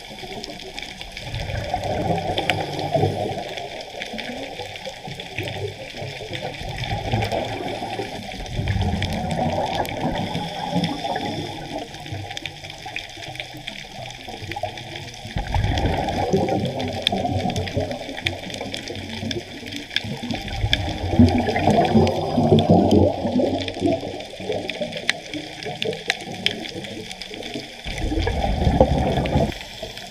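Scuba diver breathing through a regulator underwater: bursts of exhaled bubbles every five to eight seconds, with quieter inhalations between.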